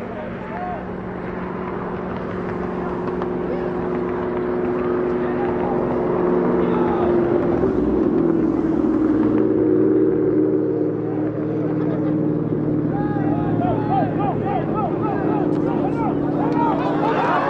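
A motor engine running steadily, growing louder over the first ten seconds and dropping in pitch about eight seconds in, with distant shouting voices over it near the end.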